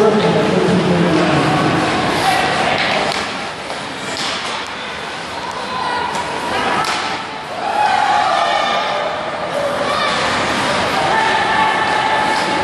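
Ice hockey play in a rink: thuds and slams of the puck and sticks against the boards, with spectators talking and shouting.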